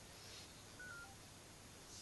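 Near silence, with a few faint, brief electronic beeps from a Samsung Galaxy Nexus phone about a second in, as a call on it is ended.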